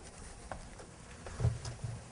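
Quiet footsteps of a man and a large dog crossing a stage floor: a few light taps, then a dull thump about one and a half seconds in.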